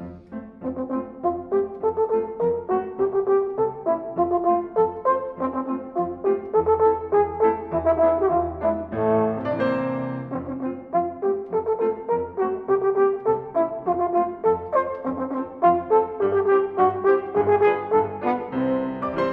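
French horn and Steinway grand piano playing a classical duet, the horn carrying a melody over quick running piano notes.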